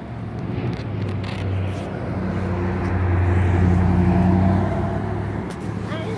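A motor vehicle's engine going by close on the street, a steady low hum that swells to its loudest three to four seconds in and eases off near the end.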